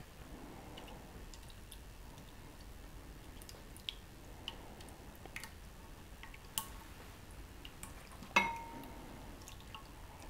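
Quiet, scattered soft clicks of a silicone spatula scraping soup out of a tin can into a glass baking dish. About eight seconds in comes one sharper tap that rings briefly.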